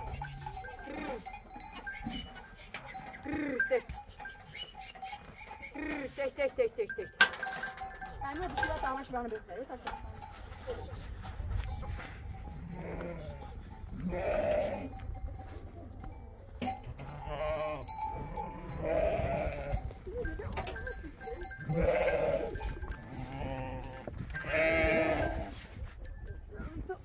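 Young goats and lambs bleating repeatedly, the loudest calls coming in the second half about every two to three seconds.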